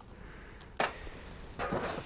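A single sharp click a little under a second in, then a short scuffing noise near the end.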